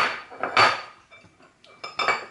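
Glass bowls and a metal spoon being handled on a kitchen counter: a sudden clattering knock at the start and another about half a second in, then light clinks near the end.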